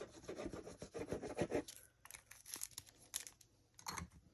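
Hand rubbing and pressing a sheet of specialty paper down onto a glued card panel: a dry, scratchy rubbing for about the first second and a half, then lighter paper rustles and small taps.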